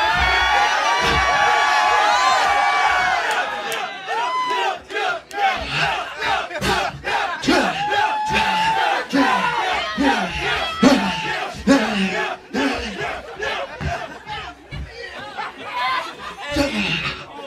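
A small crowd of people shouting and yelling together, loud and held for the first few seconds, then breaking into scattered individual shouts and whoops.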